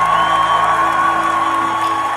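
A male singer holding one very high note with vibrato over sustained backing chords.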